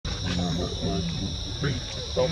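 A man talking in Thai in a low voice over a steady, high-pitched drone of insects.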